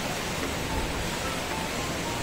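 Steady wash of falling water from indoor fountain jets in a pool, with a faint background of music.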